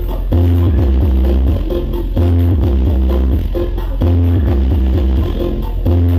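Loud electronic dance music played through a large stacked sound system, with heavy bass coming in long phrases broken by short drops roughly every two seconds.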